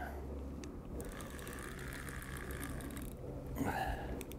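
Fixed-spool fishing reel being wound, a light rapid ticking from about a second in until about three seconds.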